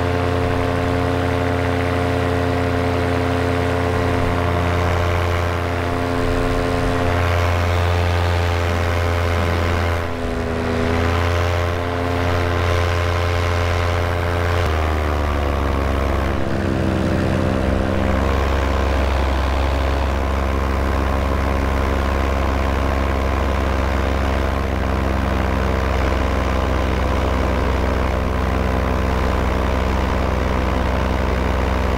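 Paramotor engine and propeller running steadily in flight, heard close up from the pilot's own frame. About halfway through, the engine note steps down in pitch and then runs on evenly at the lower speed.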